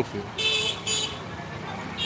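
Two short vehicle horn toots, about half a second apart, over low street traffic noise.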